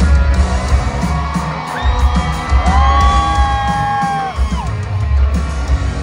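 Live rock band playing loudly, heard from within the crowd: electric guitar with heavy bass and drums. About two seconds in, a long high note slides up, is held, then drops away. Crowd yelling and whooping mixes in.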